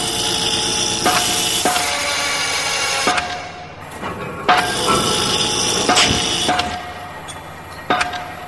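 Harsh industrial noise-music: heavy metallic clanging hits every second or two. Each hit is followed by a loud, harsh wash of ringing metallic noise that dies away before the next.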